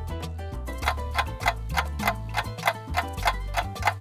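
Clock ticking sound effect, about three ticks a second, over background music with a steady bass line.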